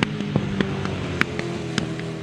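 Grasstrack racing sidecar engines running at a steady note just after the finish, with several sharp clicks over them.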